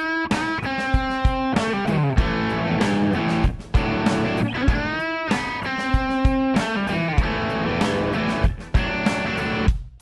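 Electric guitar played through an amp on the bridge pickup: a lead phrase with string bends on a stock Epiphone Casino's P90s, then, about four seconds in, the same kind of phrase on a Casino fitted with Seymour Duncan Antiquity dog-ear P90s. The playing stops just before the end.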